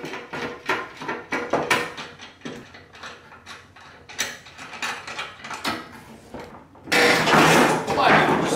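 Hand socket ratchet clicking in short irregular runs while nuts on a car's front bumper are loosened. A louder noise about a second long comes near the end.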